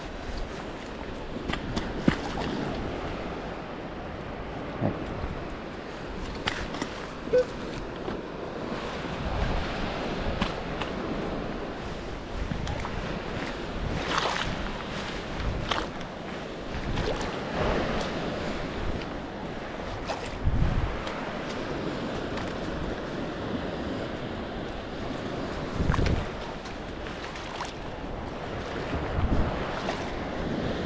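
Wind on the microphone over surf on a sandy beach, broken by scattered knocks and scrapes of a metal sand scoop digging in wet sand and a few dull thumps as a boot treads the hole back in.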